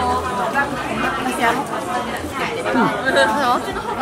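Overlapping chatter of several people talking at once.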